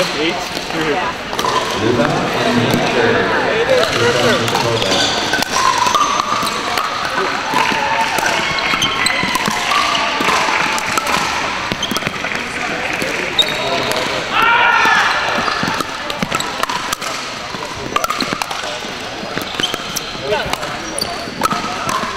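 Pickleball play in a large gym: the hard plastic ball popping off paddles and bouncing on the hardwood floor, from this court and the courts around it, over steady players' chatter from around the hall. A few high squeaks come through in the second half.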